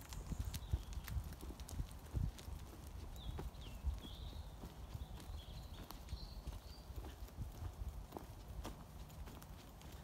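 Footsteps walking over soft, muddy ground: an uneven run of low thuds and small clicks, with no steady rhythm.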